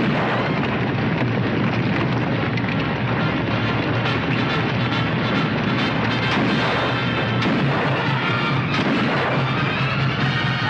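Battle soundtrack: repeated rifle and pistol shots, the sharpest two near the end, over loud, continuous dramatic film music.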